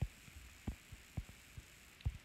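Faint room hiss with several short, soft, low thumps, about four or five in two seconds.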